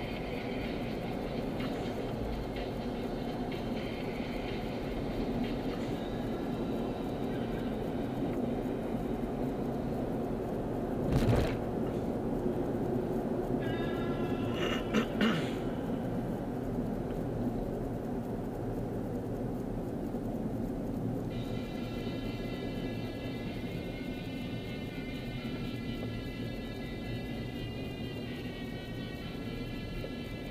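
Steady road and engine noise inside a car cabin at freeway speed, with faint music playing over it. A short loud knock comes about eleven seconds in, and two sharp knocks about four seconds later.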